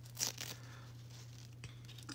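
A doll's glittery fabric skirt rustling and crinkling briefly in the hands near the start, with one faint click later.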